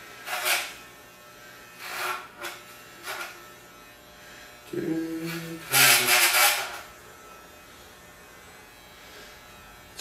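Electric hair clippers humming steadily, with a few short breathy sounds and a burst of laughter about six seconds in.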